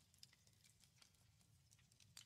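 Very faint, scattered clicks and taps of tarot cards being handled and laid down by hand, over a low steady hum.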